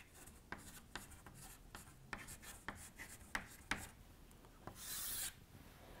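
Chalk writing on a chalkboard: a faint run of short strokes, then one longer stroke near the end, drawing a line under the written heading.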